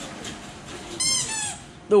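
Squeaky rubber toy animal squeaking about a second in: one short high-pitched squeak in two quick parts, falling in pitch at the end.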